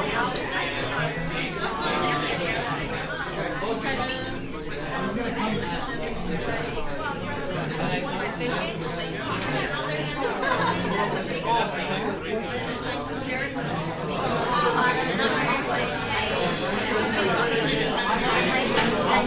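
A room full of people talking at once in pairs and small groups: a steady hum of overlapping conversations with no single voice standing out.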